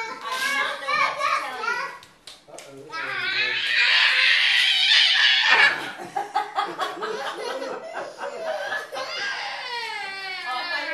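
Young children's voices while playing: calling out and laughing, with a loud shriek lasting about two seconds near the middle.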